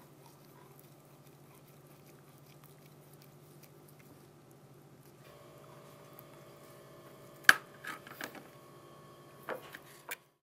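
Faint, soft handling sounds of a metal coring tool being twisted into a cooked pork chop, over a low steady hum. A sharp click sounds about seven and a half seconds in, followed by a few lighter knocks.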